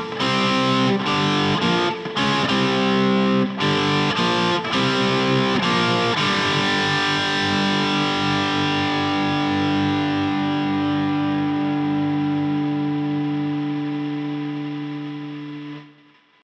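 Distorted electric guitar with a cardboard body and single-coil pickups, played with a pick: rhythmic chord stabs with short breaks for about six seconds, then one last chord left to ring and slowly fade.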